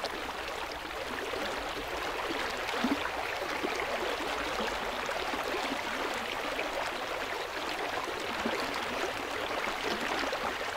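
Water flowing in a stream, a steady rushing and trickling.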